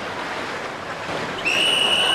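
Swimming-pool water noise, a steady wash, then about one and a half seconds in a lifeguard's whistle starts a long, steady, high blast, calling swimmers out of the pool.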